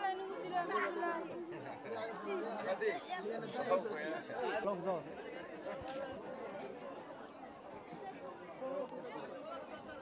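Many people talking at once: the chatter of a busy market crowd.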